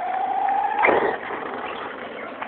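Brushless electric motor of an HPI Bullet ST Flux RC monster truck whining at a steady pitch, then rising sharply with a brief louder rush about a second in as the truck accelerates away, after which it fades.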